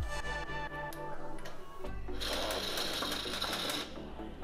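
Pneumatic impact wrench rattling on a wheel nut for about a second and a half, starting about two seconds in, over background electronic music.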